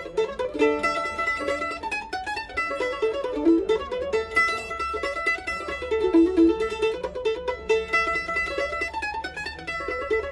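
Washburn M118SWK-D F-style mandolin picked in a brisk, continuous tune, quick runs of bright ringing notes with no breaks.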